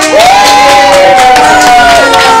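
Several young children's voices together holding one long, loud note, rising into it just after the start and keeping it steady almost to the end.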